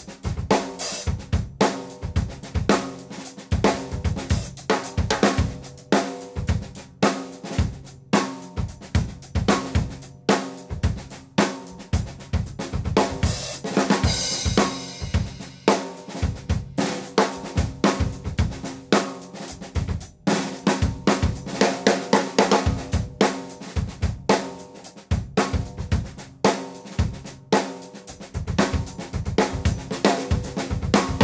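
Drum kit played in a straight-eighth groove: snare backbeats with quiet ghost notes on the snare between them, over bass drum and hi-hat, in a steady run of strokes. A cymbal rings out brightly about halfway through.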